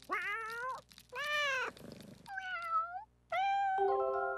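Cartoon cats meowing: four separate meows, one after another, each under a second long.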